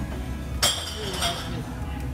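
A sharp clink of tableware about half a second in, ringing briefly, with a lighter second clink just after. It sits over the steady murmur of a busy restaurant.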